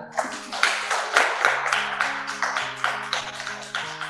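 Instrumental background music of quick plucked or strummed string chords over held low notes that change pitch.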